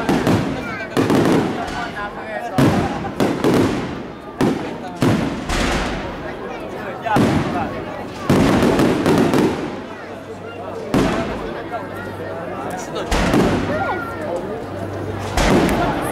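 Aerial fireworks display: shells bursting in a string of sharp bangs, one every second or two, over the murmur of voices in the watching crowd.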